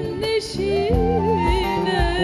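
A woman singing held, ornamented notes into a handheld microphone, over instrumental accompaniment.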